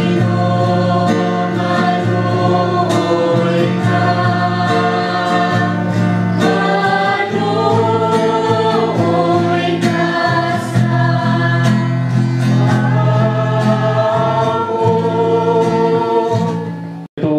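A small group of voices singing a hymn together, accompanied by a strummed acoustic guitar.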